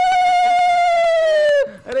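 Conch shell (shankha) blown in one long, steady high note that sinks slightly, then drops in pitch and breaks off as the breath runs out, about one and a half seconds in.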